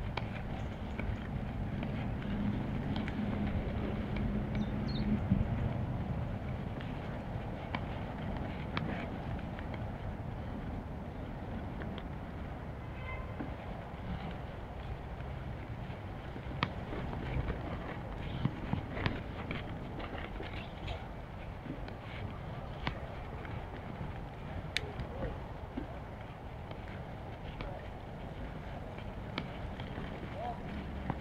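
Bicycle riding over a rough dirt track: steady rumble of tyres and wind on the action camera's microphone, a little louder for the first few seconds, with scattered clicks and knocks as the bike rattles over bumps.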